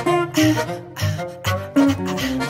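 Instrumental passage from a small acoustic jazz band, with plucked guitar over a steady low beat about twice a second and sustained pitched notes; no singing.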